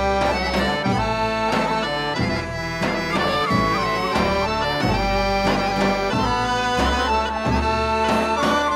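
Bulgarian folk instrumental: a gaida bagpipe and an accordion play a dance tune over a low drone, with regular beats on a tapan drum.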